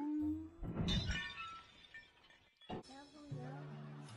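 A sudden crash with ringing about a second in, then music with steady held notes from about three seconds.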